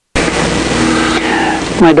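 Dead silence that breaks suddenly into a loud, steady rushing noise with a faint low hum, lasting about a second and a half before a man's voice comes in near the end. The noise is the kind of background hiss that starts a new recording segment at an edit.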